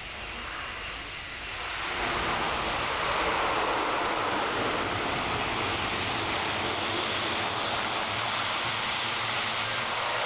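Airbus A400M Atlas's four TP400 turboprop engines and eight-bladed propellers on landing rollout after touchdown. A steady, loud rushing drone swells about two seconds in and then holds.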